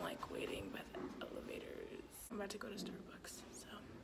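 A girl's voice speaking in a hushed, whispered tone, quiet and close to the microphone; only speech.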